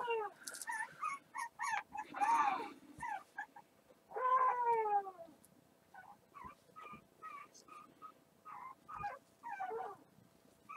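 Pet dogs whining and yipping in a string of short high calls, with a long falling whine about four seconds in, followed by a run of shorter, fainter whimpers.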